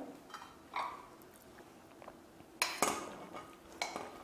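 A metal serving spoon scraping and clinking against a pressure cooker pot and a plate as cooked rice is scooped out and served, a few short knocks and scrapes with the loudest about two and a half seconds in.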